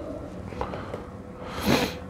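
A man's short, forceful breath through the nose near the end, as he strains pulling on a rod guide with pliers.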